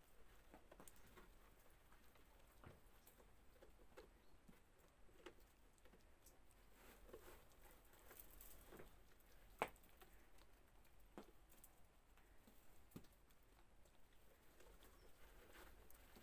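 A goat nibbling and chewing snow from a hand: faint, irregular small crunches and clicks, with one sharper click a little past halfway.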